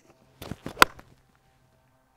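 A golf iron striking the ball off the turf: one sharp, loud click a little under a second in, with a few softer brushing sounds just before it from the downswing.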